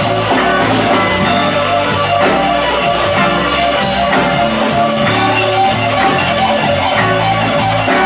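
Live electric blues band playing: electric guitar over a drum kit with steady cymbal strokes and low bass notes.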